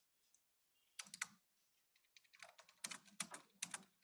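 Computer keyboard keys being typed: a few quick keystrokes about a second in, then a longer run of keystrokes from about two seconds in until near the end.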